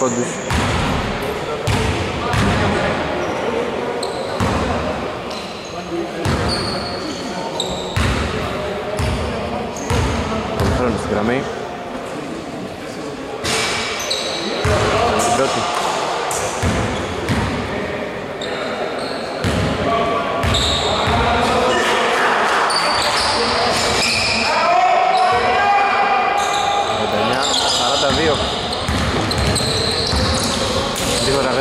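Basketball bouncing on a hardwood gym court during a game, sharp thuds scattered throughout, with players' voices calling out, echoing in a large sports hall.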